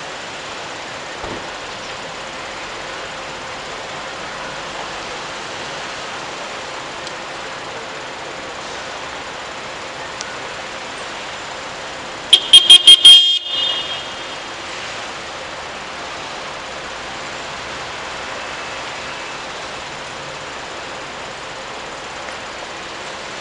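Steady city street background noise. About twelve seconds in it is broken by a loud, quick string of about six high-pitched toots or rings lasting about a second, with a short ringing tail.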